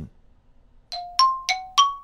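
A short electronic sting of bell-like chimes. About a second in, struck tones begin, alternating between a lower and a higher note about three times a second, each ringing briefly.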